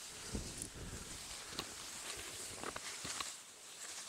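Soybean leaves and stems rustling and brushing as a hand pushes through the plants, with a scattering of soft crackles.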